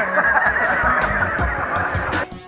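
Two men laughing together, with hearty, honking laughter and no words.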